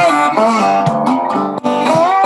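Metal-bodied resonator guitar played by hand, a quick run of picked and strummed chords that changes every fraction of a second, as a sound check.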